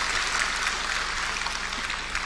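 Audience applause in a large hall: a steady crackling patter of many hands clapping.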